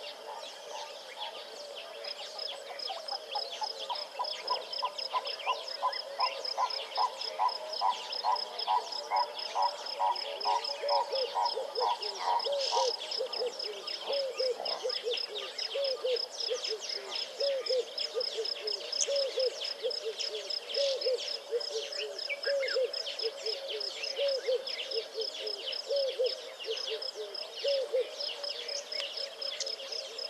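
A natural chorus of frogs, insects and birds. A steady, fast high trill runs throughout. A quick series of evenly repeated pulsed calls starts about three seconds in and stops near the middle, followed by short low calls repeated about once a second, with scattered high chirps over the top.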